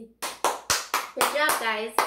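A run of hand claps, about four a second, with a voice talking over them from about halfway in.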